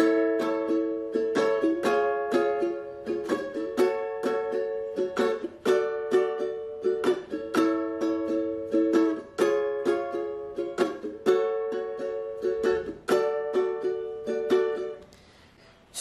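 Ukulele strummed in a down, down, up, up, down, up pattern through a progression of barre chords starting on A major, each chord held for two rounds of the pattern. The strumming stops about a second before the end.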